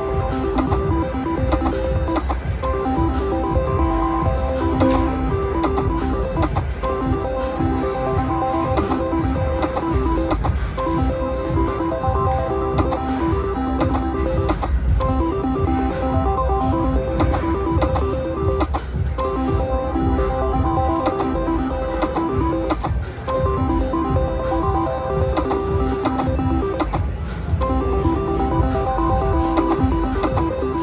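An IGT Pinball reel slot machine playing its chiming electronic spin tune, a run of short beeping notes that stops and restarts with each spin, about every four seconds. Underneath is a steady low casino din.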